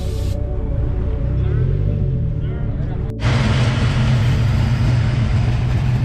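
Music with long held notes for about three seconds, then an abrupt cut to a steady low car engine hum and a dense wash of parking-lot crowd noise at a car meet.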